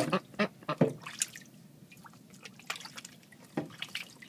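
Young ducks splashing as they bathe in shallow water in a utility sink: a run of splashes in the first second or so, then scattered drips and small splashes.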